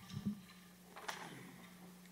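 Quiet room tone in a pause between speech: a steady low hum with a few faint clicks, one about a quarter second in and one about a second in.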